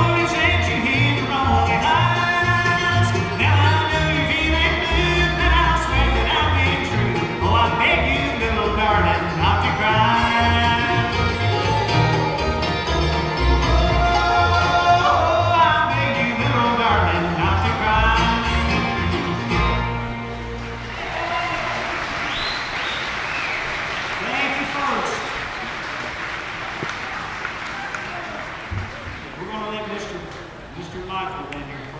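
Live bluegrass band playing, led by fiddle with acoustic guitar. The tune ends about two-thirds of the way through and gives way to audience applause.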